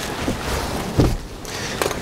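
Folding rear seat backrest of a VW Tiguan being pushed down flat into the load floor: a dull thump about halfway through and a sharp click near the end, over steady outdoor background noise.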